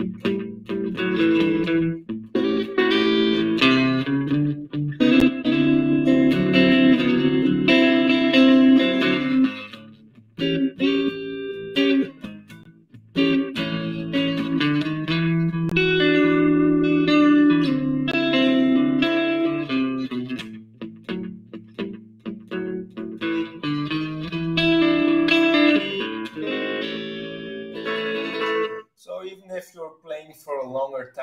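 Red Stratocaster-style electric guitar played alone: picked blues riffs and chords, broken by a couple of short pauses.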